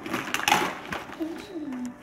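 Gift wrapping paper being torn and crumpled as a present is unwrapped, with crackling rustles and a louder rip about half a second in.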